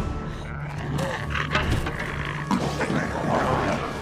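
A young woman's strained gasps and groans of exhaustion, over a low music drone.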